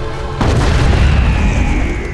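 A sudden deep boom about half a second in, its low rumble carrying on under dramatic music with a high held note. The sound cuts off abruptly just after.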